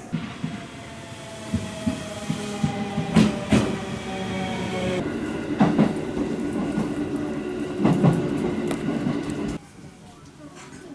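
Train running, heard from inside the carriage: a steady rumble with a whine slowly falling in pitch and irregular clacks of the wheels over rail joints. It cuts off abruptly just before the end.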